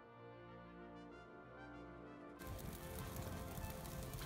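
Quiet background music of held, brass-sounding notes, cut off about two and a half seconds in by a steady hiss of outdoor noise.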